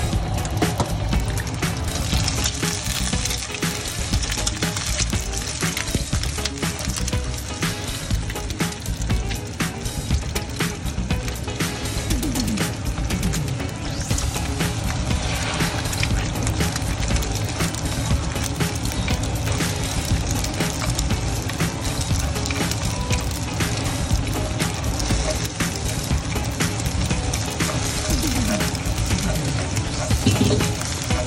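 Background music over beaten eggs sizzling and crackling in hot oil in a pan.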